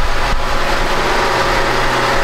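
Chrysler Pacifica's 3.6-litre V6 idling steadily.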